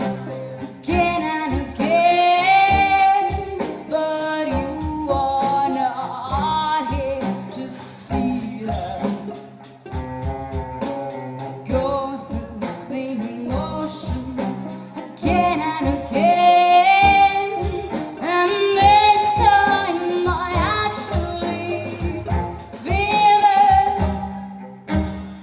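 A woman singing a song live over cello, violin and a drum kit, the drums keeping a steady beat under the sung lines.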